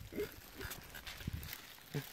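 The last short burst of a person's laugh, then low, rumbling handling noise as the phone is moved about, which stops about a second and a half in.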